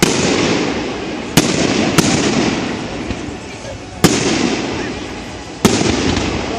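Aerial firework shells bursting overhead: five sharp bangs, one at the start, two close together around one and a half to two seconds in, one about four seconds in and one near the end. Each is followed by a long echo that slowly dies away.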